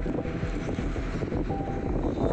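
Steady outdoor rumble with wind buffeting the microphone.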